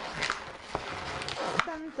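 Latex modelling balloons being handled and twisted together, with several short, sharp rubbing sounds of rubber on rubber.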